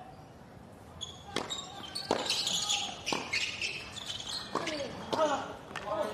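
Tennis rally on a hard court: sharp racket strikes and ball bounces, roughly one a second, starting about a second in. Short high squeals near the end.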